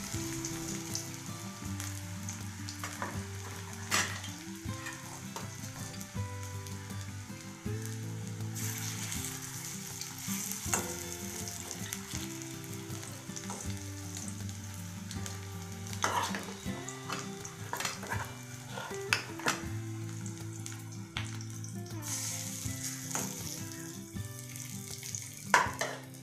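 Onion piyaji (fritters) sizzling in hot oil in a metal kadai, the hiss swelling and easing as they are turned. A metal spatula scrapes and clicks against the pan every few seconds, with two sharp clacks near the end.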